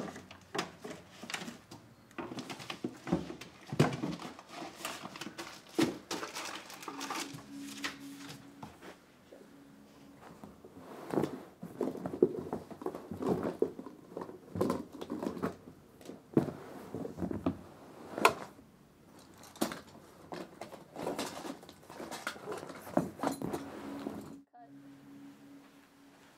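Hands searching through household things (papers by a printer, fabric storage boxes, bedding): an irregular run of knocks, taps and rustling. It drops away suddenly near the end.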